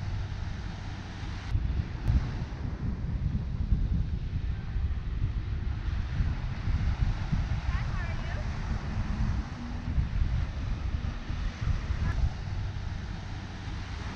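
Wind buffeting the microphone in irregular gusts, a heavy low rumble, over the wash of small waves breaking on a beach.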